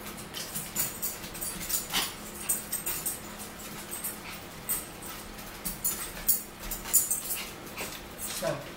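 Eating sounds: irregular chewing, mouth smacks and clicks from people eating chicken nuggets and fries, with a fork tapping on a plate, over a steady low hum.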